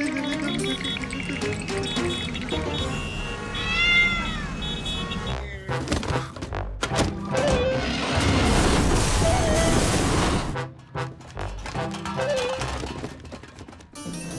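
Cartoon background music with comic sound effects and a cartoon cat's vocal noises. A rising-then-falling glide comes about four seconds in, and a loud rushing noise runs from about eight to ten and a half seconds in.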